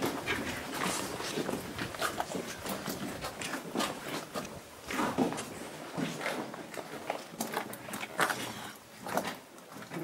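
Footsteps and clothing rustle of several people walking through a narrow cave tunnel: irregular scuffs, shuffles and small knocks.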